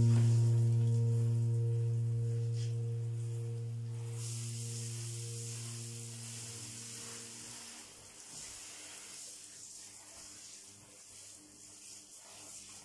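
Background piano music ends on a low chord that rings on and fades away over the first seven seconds or so. From about four seconds in, a steady hiss of water spraying from a hand-held shower head into a bathtub.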